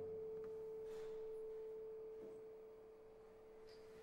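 Classical guitar's final note ringing on as a single clear, steady tone, slowly fading away.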